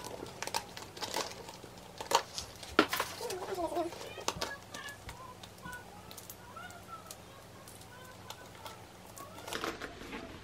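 Metal snap hooks of a Louis Vuitton handbag's leather shoulder strap clicking and clinking as they are worked onto the bag's rings, with the leather rustling in the hands. The clicks are irregular and come thickest in the first half.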